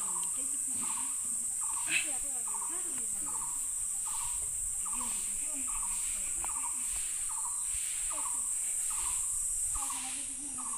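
Steady, high-pitched insect chorus, typical of crickets, with a short chirping note repeating about twice a second. There is a single sharp click about two seconds in.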